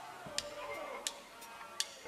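A drummer's count-in: three sharp stick clicks, evenly about two-thirds of a second apart, setting the tempo for the band to come in.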